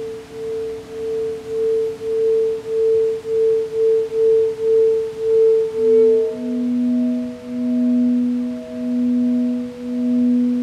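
Crystal singing bowls rubbed around the rim with a mallet: a pure, sustained tone that swells and fades about twice a second. About six seconds in, a second, lower-pitched bowl takes over, pulsing more slowly, about once a second.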